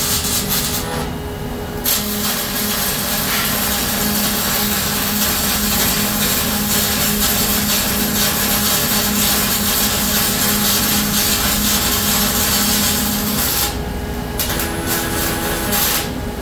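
Robotic MIG welding torch arc crackling and hissing as it lays a weld bead on a steel tractor frame, with a steady hum under it. The arc stops for about a second near the start, then runs steadily for some twelve seconds. It cuts out again near the end and restarts just before the close.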